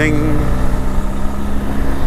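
Motorcycle engine running steadily at road speed under wind noise, riding along at about 50 km/h. A sung 'ding' ends just as it begins.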